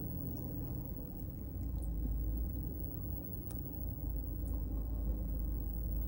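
Steady low rumble of a car heard from inside the cabin as it creeps along at slow speed: engine and road noise. A faint click comes a little past halfway.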